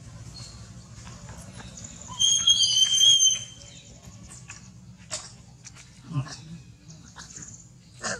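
A long-tailed macaque gives one loud, high-pitched scream lasting just over a second, about two seconds in.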